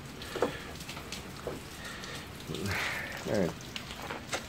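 Scattered faint clicks and handling noise from hands working the quick-release latch of a detachable sissy bar on a Harley-Davidson's docking hardware, trying to get it to pop out.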